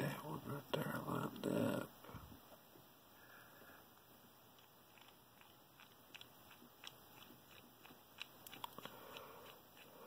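Faint small metallic ticks of a precision screwdriver turning the screw on the brass face of a lock cylinder's plug, scattered through the second half. A louder burst of noise of unclear source fills the first two seconds.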